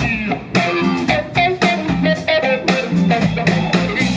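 Live blues band playing: electric guitar lines over a steady drum beat.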